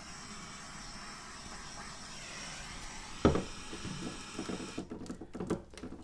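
A small handheld butane torch hissing steadily as it is passed over wet acrylic pour paint to bring up silicone cells; it cuts off about five seconds in. A single sharp knock near the middle, and light handling knocks at the end.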